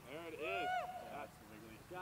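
Men's voices calling out on an open field, two of them overlapping in the first second with one drawn-out, wordless exclamation. Quieter voice sounds come near the end.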